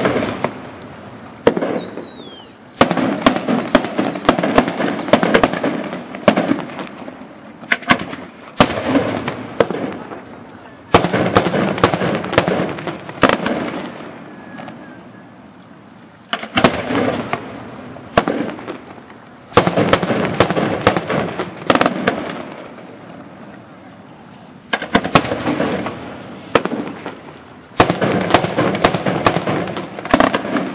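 Aerial firework shells bursting in repeated volleys: clusters of sharp bangs every few seconds, with crackling and echoing rumble in the gaps between them.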